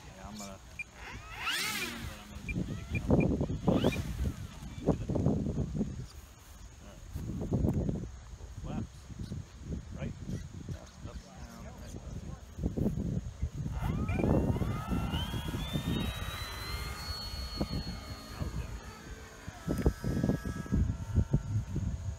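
Gusty wind buffets the microphone with uneven low rumbles throughout. About two seconds in, a short rising whine comes from the E-flite Draco's electric motor and propeller as it taxis. About fourteen seconds in, the whine climbs steeply in pitch to full throttle for the takeoff roll and holds high for a few seconds.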